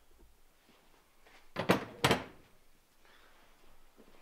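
Snowmobile A-arm being set down on a wooden workbench: two sharp clunks about half a second apart, a little before and just after the midpoint.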